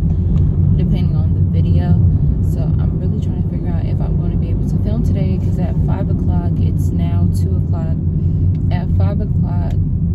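Steady low rumble of a car's engine and tyres heard from inside the cabin while driving, with a woman's voice talking over it.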